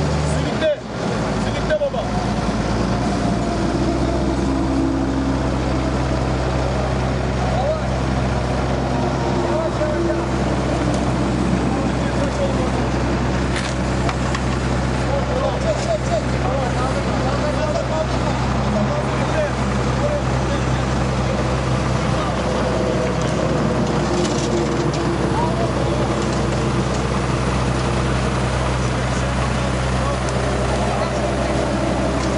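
Truck-mounted crane's engine running steadily as it hoists a wrecked car, with people talking in the background.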